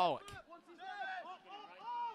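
A commentator's word at the start, then faint distant voices calling out from the field and stands under the broadcast's ambient pitch-side sound.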